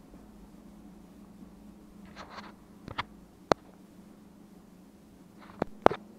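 Quiet room tone with a faint steady hum, broken by a handful of short sharp clicks, the loudest about three and a half seconds in and just before the end.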